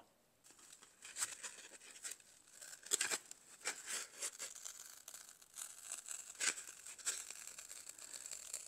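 Tin-cure silicone rubber mold being peeled off sealed foam: a faint crackly tearing sound with scattered sharp ticks as the rubber lets go of the surface.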